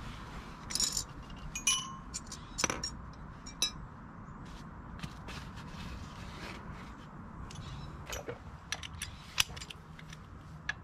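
Metal hand tools and parts clinking and clicking as they are handled, a few strikes ringing briefly, over a steady low hum.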